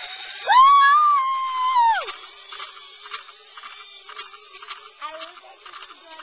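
A long, high-pitched excited scream, held for about a second and a half and dropping in pitch as it ends. After it come faint scattered clicks and ticks.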